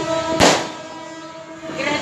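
A single sharp firecracker bang about half a second in, over a steady, held horn-like tone.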